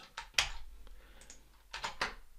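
Computer keyboard keystrokes: a few separate key presses, the loudest about half a second in and another near the end.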